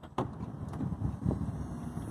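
Sliding side door of a 2013 Chrysler Town & Country minivan opening: a click as it unlatches just after the start, then a low steady rumble as the door rolls open.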